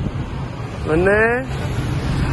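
A short rising vocal sound from a person about a second in, over a steady low rumble.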